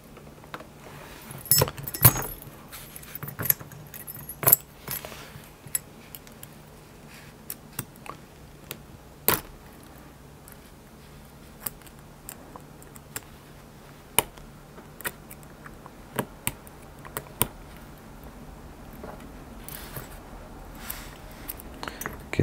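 Small metal lock parts and a key clicking and clinking as a brass padlock cylinder is handled and taken apart, with irregular light clicks and a few sharper taps, over a faint steady hum.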